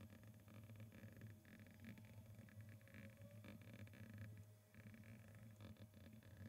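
Near silence: faint intermittent scratching of a stylus writing on a tablet screen, over a low steady hum.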